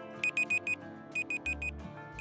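Countdown-timer beeping: two groups of four quick, high digital alarm-clock beeps, about a second apart, over soft background music.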